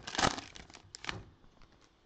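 Foil wrapper of a Panini Prizm football blaster pack being torn open and crinkled by gloved hands: a few sharp rustles in the first second or so, then fading away.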